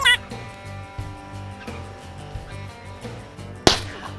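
A single shotgun shot, one sharp crack about three and a half seconds in, heard over background music.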